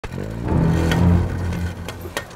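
Engine of a converted amphibious Citroën CX running as the car creeps down a riverbank, a steady low hum that fades near the end, with two short clicks.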